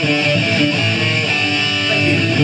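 A live rock band playing loudly, with sustained electric guitar notes to the fore.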